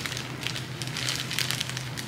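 Clear plastic packaging bag crinkling and crackling as fingers handle and work it open, a dense run of small crackles.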